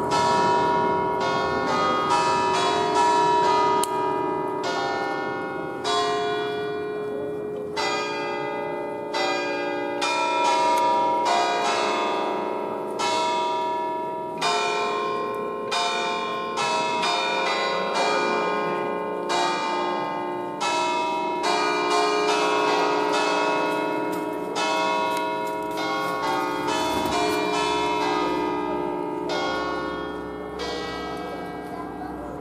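A ring of eight church bells in B, cast by Ottolina in 1951, struck one after another to play a Marian melody. The notes come at an uneven pace, with each bell's ring hanging on and overlapping the next.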